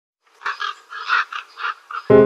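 A quick series of about seven short, harsh animal calls, starting about half a second in.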